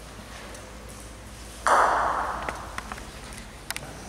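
Bocce balls striking each other: one sharp, ringing clack about one and a half seconds in that fades over about a second, followed by a few light clicks.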